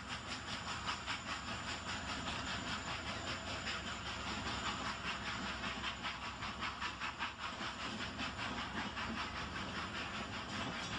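A train running steadily, with a fast, even rhythmic beat over a continuous hiss.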